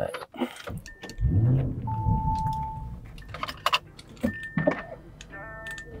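Lamborghini Urus power window motor running for about two seconds, starting a little over a second in, with scattered clicks around it.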